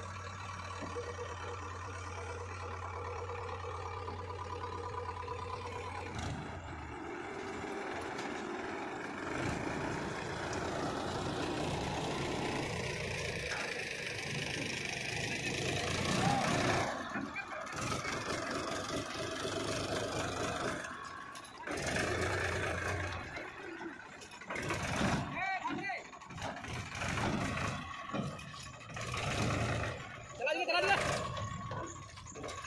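JCB 3DX backhoe loader's diesel engine running steadily for about six seconds, then diesel engines of a tractor and the backhoe at work, the sound rising and falling unevenly with short drops in the later part.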